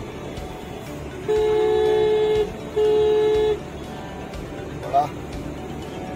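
Car horn sounding two long, steady honks with a short gap between them, the first a little over a second long and the second slightly shorter.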